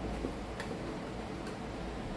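Faint sharp ticks, roughly one a second, over a steady low hum of room noise.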